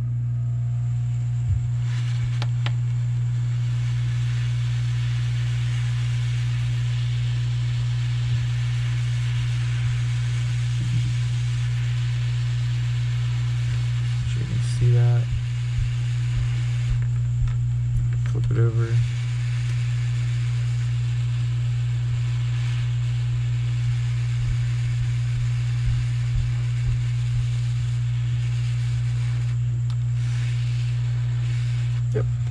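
Hot-air heat gun running steadily, a constant low hum with a rush of blown air, as it shrinks heat-shrink tubing over a capacitor's soldered wire joints. Two brief louder sounds come about 15 and 18 seconds in.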